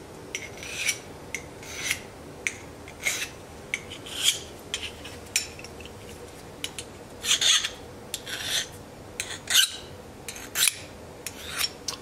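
Hand file stroked along the beveled edge of a bypass pruner blade to sharpen it: repeated short rasping strokes, about two a second.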